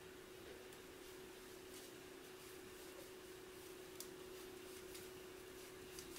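Near silence: a steady faint hum with a few faint, sparse clicks from wooden knitting needles as stitches are worked.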